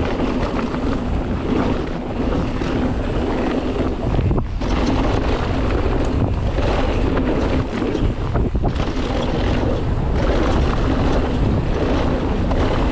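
Mountain bike riding down a rocky dirt trail, recorded by a GoPro Hero 8 on the bike or rider: wind buffets the microphone over a steady clatter of tyres on loose stones and the bike rattling. The noise eases briefly about four seconds in.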